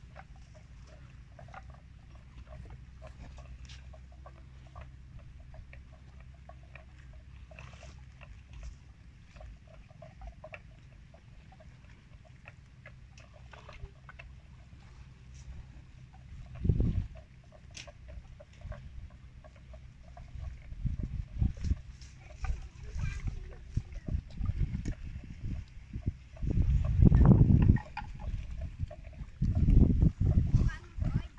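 Water buffalo grazing close by, heard as irregular low sounds of cropping grass and chewing. The sounds grow louder and more frequent in the second half and are loudest near the end.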